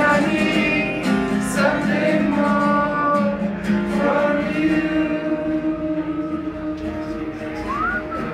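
A man singing a pop-rock song solo, accompanying himself on a strummed acoustic guitar.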